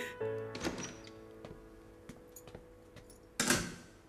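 Soft background music with held notes, fading out, then a single loud door thump about three and a half seconds in.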